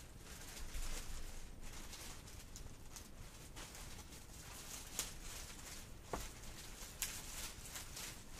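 Clear plastic shipping bag crinkling and rustling as hands pull it open, with a few sharper crackles in the second half.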